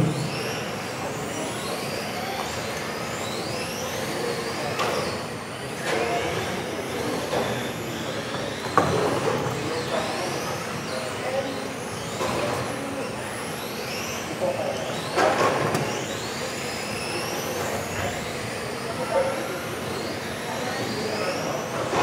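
Electric RC touring cars racing, their motors whining and rising and falling in pitch over and over as the cars accelerate and brake around the track.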